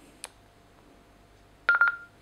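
Baofeng UV-82 handheld radio being switched on: a click from its on/off volume knob, then a quick run of short beeps at one pitch that runs into a brief held tone, the radio's power-on tone.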